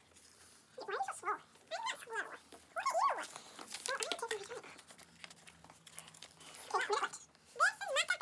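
Children's high-pitched voices in several short wordless vocal bursts, with paper crinkling as dough is pressed and worked on sheets of paper.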